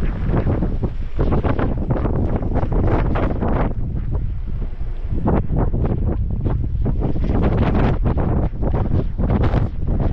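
Wind buffeting the microphone of a camera mounted outside a moving off-road vehicle: a loud, gusting rumble that swells and dips irregularly.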